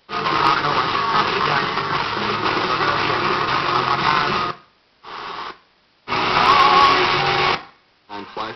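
Panasonic RX-DT680 boombox playing the radio through its own speakers and switching stations from the remote. There is a stretch of music about four and a half seconds long, a half-second snippet, then another station for about a second and a half, each cut off sharply with a near-silent gap between.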